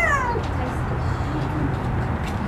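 A short, high-pitched falling vocal cry right at the start. A steady low rumble runs under it inside the car.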